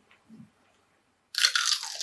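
A loud, crisp crunch as a child bites into a fresh mini cucumber, starting about one and a half seconds in and trailing into chewing.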